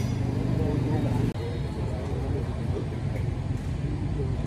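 Street ambience: a vehicle engine running steadily under the indistinct talk of a crowd of bystanders. The sound drops out for an instant about a second in.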